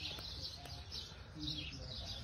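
Birds chirping faintly, short high chirps repeating several times, over a low steady rumble of traffic going by.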